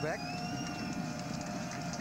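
Stadium crowd noise, a steady mass of many voices, with a thin high held tone over it for the first second and a half.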